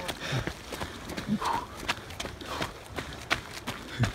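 Footsteps on hard ground, a quick series of about four steps a second.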